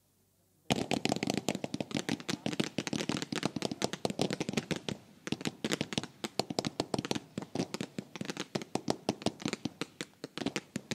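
A fireworks barrage: after a short lull, shots begin suddenly a little under a second in and run on as a dense, irregular string of sharp cracks and bangs, several a second, with rising comet shots and star bursts going off together.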